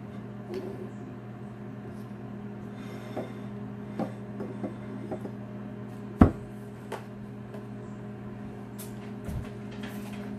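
Steady low hum of a microwave oven running while it melts butter, with scattered light clicks and knocks of kitchen items being handled and one sharper knock about six seconds in.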